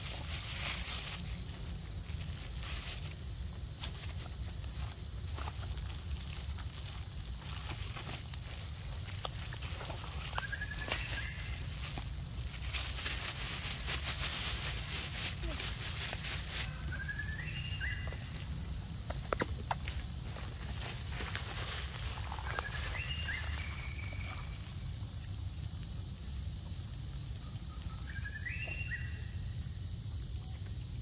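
Outdoor forest ambience with a steady high drone, a few seconds of rustling near the middle, and four short rising calls spaced several seconds apart.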